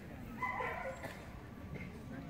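A dog gives one short, high-pitched whine about half a second in.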